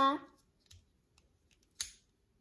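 Plastic parts of a small transforming robot toy clicking as they are turned by hand: a faint click about two-thirds of a second in, then a sharper one near the end.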